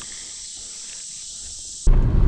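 Steady high-pitched chorus of insects buzzing, cutting off suddenly near the end.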